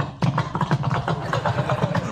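A man's voice imitating an engine into a handheld microphone: a rapid, pulsing, sputtering rumble.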